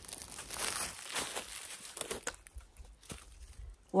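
Rustling and crinkling, with a few light clicks in the second half.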